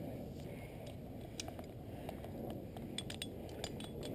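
Light metallic clicks and clinks of climbing hardware as a lanyard's carabiner is unclipped and handled, a few separate ticks over a low rumble.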